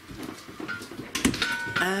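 A short, high chime like a doorbell: one thin note, then two notes sounding together a moment later. Near the end a man's drawn-out 'oh' begins.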